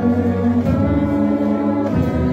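Brass band of saxophones, euphoniums and tubas playing a slow hymn in held chords, the chord changing about two-thirds of a second in and again near the end.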